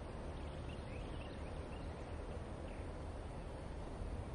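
Faint outdoor ambience: a steady low hiss with a few faint, scattered bird chirps.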